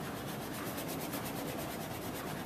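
Bristle brush scrubbing oil paint onto a canvas in quick, short back-and-forth strokes, several a second, which become clear about half a second in.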